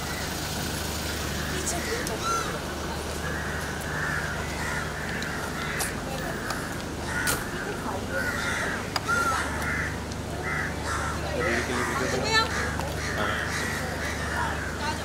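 Birds calling repeatedly, over a steady low hum and a few sharp clicks.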